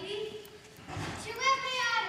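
A young actor's voice speaking stage lines in a hall, pausing briefly about half a second in and resuming about a second later.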